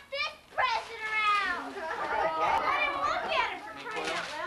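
Young children's high-pitched voices calling and chattering over one another, with no clear words.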